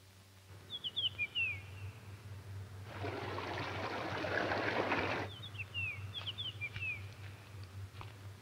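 Songbird chirping in quick runs of short falling notes, twice. Between the runs, rushing mountain-river water is heard for about two seconds and cuts off abruptly, over a low steady hum.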